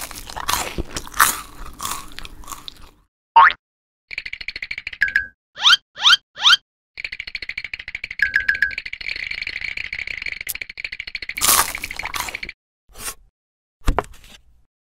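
Sound-designed eating effects: crunching and chewing, with three quick rising cartoon swoops about halfway through and a longer steady buzzing effect after them, ending on a sharp hit.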